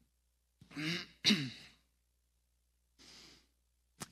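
A man clearing his throat, two short voiced rasps about a second in, followed by a faint breath near the end.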